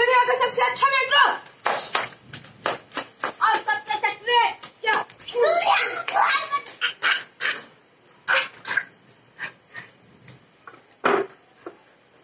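Children's voices calling out in short bursts, mixed with many sharp slaps and knocks during the first two-thirds, then quieter with one last knock near the end.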